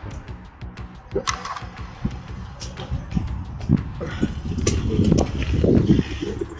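Mountain bike rolling over a dirt trail: scattered clicks and knocks from the tyres and bike over a low wind rumble on the action camera's microphone, building louder toward the end. Faint background music under it.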